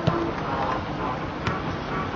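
Steady background noise at an outdoor small-sided football game, with one sharp knock about one and a half seconds in, a football being struck as a pass is played and received on the turf.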